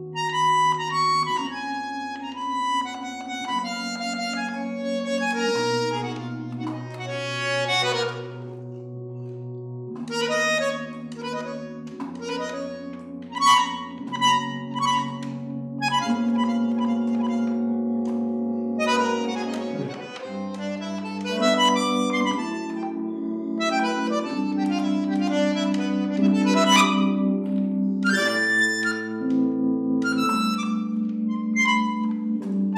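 Bandoneon and electric keyboard playing an instrumental passage of a song, with held chords and bass notes under quick runs of notes.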